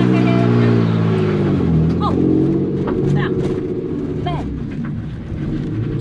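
Drift car's engine heard from inside the cabin, held at high revs, dipping and climbing again about two seconds in, then easing off toward the end.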